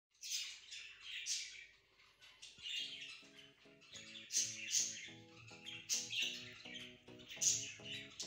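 Repeated short, high-pitched chirps, several a second, with soft background music coming in about three seconds in.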